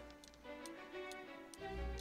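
Quiet background music of sustained held tones with a steady, clock-like ticking running through it.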